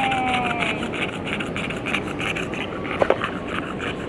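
Bulldog panting in a quick, even rhythm, tired and hot after a long walk on a warm day, over a steady hum of distant traffic. A short sharp click sounds about three seconds in.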